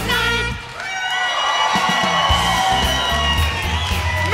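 A vocal group and backing band end a song on a long held final chord, with the audience cheering and whooping over it.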